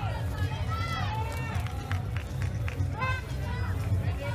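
Raised voices of spectators and coaches shouting over a steady low rumble of venue noise, with a few short knocks near the middle.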